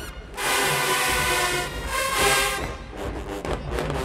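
Marching band playing in the stands: after a brief break, a loud sustained brass chord held for about two seconds, then drum strokes under softer horn notes.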